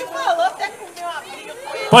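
Speech only: several people chatting at once, at a lower level than a nearby microphone voice.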